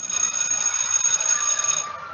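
A continuous bell ringing, a cartoon school-bell sound effect, held steadily for about two seconds and stopping shortly before the end.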